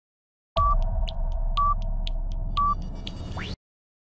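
Film-leader countdown sound effect timing the answer period: three short beeps one second apart over a low hum with light clicking, ending in a quick rising sweep, then cutting off suddenly.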